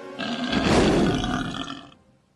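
Comic film sound effect of a swallowed bomb going off inside a cartoonish character: a loud, deep, rumbling blast with a roaring, belch-like quality. It swells over the first half-second and fades over about a second.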